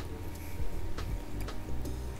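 Close-miked chewing of a bite of cheese pizza, with several sharp mouth clicks, over steady low background sound from the television.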